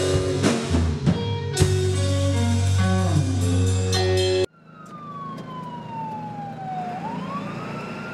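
Rock band playing live on drum kit, electric guitar and bass, cut off abruptly about four and a half seconds in. A quieter siren-like wail follows, sliding down in pitch for a couple of seconds and then rising again.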